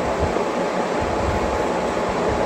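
Wall-mounted split air conditioner running: a steady rushing hiss with a faint even hum, unchanging throughout.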